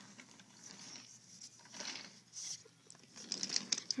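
Faint rustling and soft scraping as a toy train is pushed by hand along wooden track, with a few light clicks near the end.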